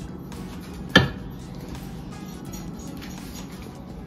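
Quiet background music, with one sharp clink about a second in: a glass measuring cup knocking against a baking dish as beaten eggs are poured over shredded hash browns.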